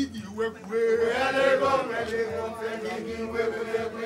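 Voices chanting, holding one long steady note from about half a second in.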